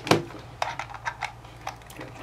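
Five or so light, sharp clicks and taps from hands handling a small plastic-cased handheld oscilloscope and the metal BNC connector of its test lead as the lead is brought to the input.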